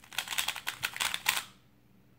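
QiYi Valk 3 speedcube being turned fast by hand: a rapid, uneven run of plastic clicks and clacks as a ZBLL last-layer algorithm is executed, ending about a second and a half in.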